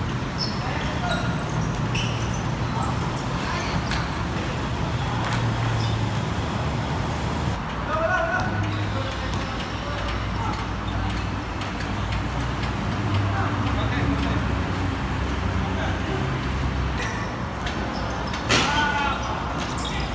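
Pickup basketball game on a hard court: the ball bouncing, short clicks and knocks of play, and players calling out, with a loud shout near the end. A steady low rumble of road traffic runs underneath.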